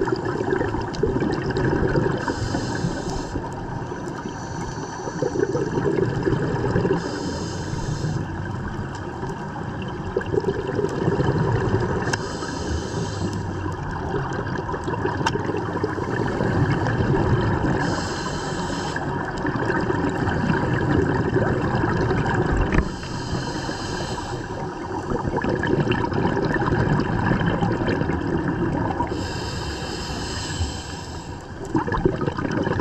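Scuba diver breathing through a regulator, a hissing, bubbling breath about every five seconds, over a steady underwater rumble.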